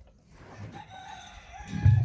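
A rooster crowing faintly: one long call that rises and then holds.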